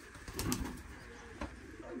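Domestic pigeons cooing in a loft, with sharp knocks from the wooden shelving slats as it is climbed: the loudest about half a second in, another about a second and a half in.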